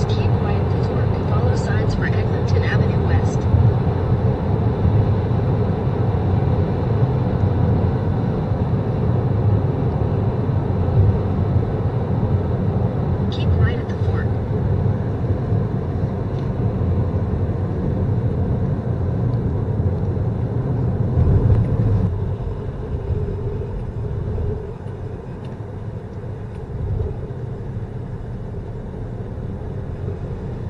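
Road and tyre noise of a car in motion, heard from inside the cabin as a steady low rumble. It drops noticeably a little after twenty seconds in as the car slows from highway speed.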